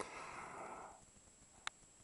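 A soft breath out over the first second, then near silence broken by one short, sharp click a little before the end.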